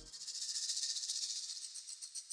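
A fast, high rattling hiss like a shaker or maraca, thinning into separate shakes near the end: a shaker-type sound effect.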